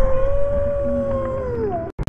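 One long, drawn-out wailing howl held at a steady pitch, sagging slightly near the end and then cutting off abruptly, over a low rumble.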